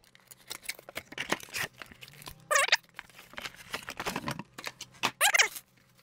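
A cardboard retail box being opened and a plastic battery charger lifted out: a string of scraping, rustling and knocking handling noises, with two short high squeaks, one about halfway and one near the end.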